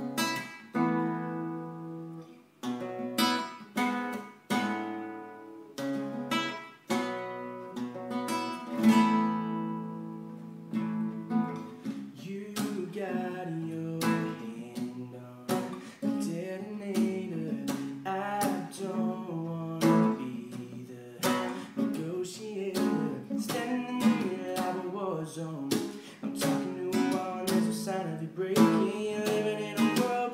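Acoustic guitar played with strummed chords that each ring out. A young man's voice starts singing along about twelve seconds in, and the strumming continues under it.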